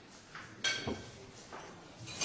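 Quiet restaurant room sound with a brief sharp clink about a third of the way in, followed by a faint short low sound.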